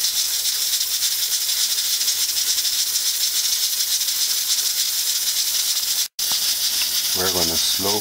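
Steam hissing steadily from a pressure cooker's vent while it cooks under pressure on a low flame. The hiss cuts out for an instant about six seconds in.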